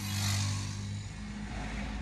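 A motor vehicle passing by, heard from inside a car: a low engine hum with road hiss that swells in the first half-second and fades away over the next second, leaving a faint rumble.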